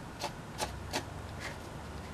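A handful of light, sharp plastic clicks a few tenths of a second apart as the bottom of a plastic LED camping lantern is handled and worked with the fingers.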